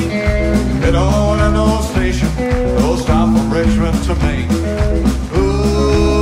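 Live country rock band playing with electric guitar, upright bass and drums, a steady driving beat.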